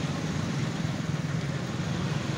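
Steady low rumbling background noise with no cleaver strikes.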